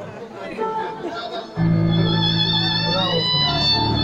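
A live band starts a song's intro about one and a half seconds in: long held low chords with a high sustained melody line over them. Before that there is a moment of low talk.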